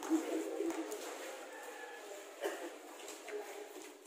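Faint background murmur of scattered voices from players and onlookers, with a couple of brief louder calls.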